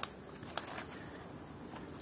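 Faint, steady chirring of night insects, with a few soft clicks about half a second in.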